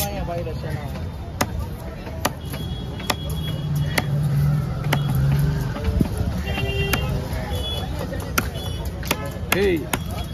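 A large broad-bladed knife chopping fish on a wooden log block: sharp, irregular knocks roughly a second apart as the trevally fillet is cut into pieces, over a steady low background rumble.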